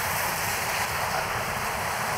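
Steady rushing noise of wind on the microphone of a bicycle-mounted camera while riding.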